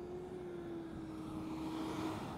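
A refuse truck drives past close by, its engine and tyre noise growing louder as it nears, over a steady engine tone.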